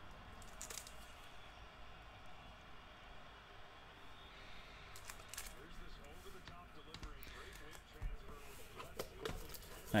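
Faint handling noise: light clicks and taps of a hard plastic graded-card case being turned over in the hands, with a couple of louder knocks near the end.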